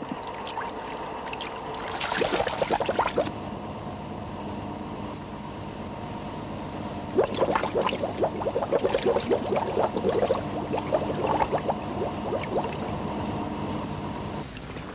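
Bubbling and gurgling of exhaled air streaming up from divers making a free ascent, over a steady hum. A short burst of bubbling comes about two seconds in, and a longer, louder run from about seven to twelve seconds.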